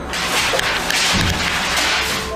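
A loud burst of rustling and flapping, papers being flung about, with a dull thump a little past one second.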